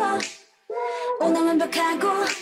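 Isolated female pop vocals without instruments: a sung phrase ends about a quarter of a second in, and after a brief gap a new sung line starts sharply just past halfway.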